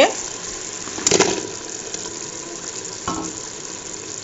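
Thick tomato and mutton gravy bubbling steadily in an open pressure cooker on the stove. Two brief louder sounds break in, one about a second in and a smaller one about three seconds in.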